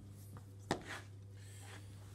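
Pizza dough being handled by hand on a floured work surface: faint soft rubbing, with one sharp tap a little under a second in, over a steady low hum.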